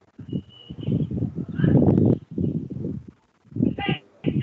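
Garbled, choppy call audio: loud irregular bursts of distorted sound with no clear words, as an online meeting connection breaks up.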